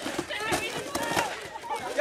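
Several young people's voices talking and shouting over one another.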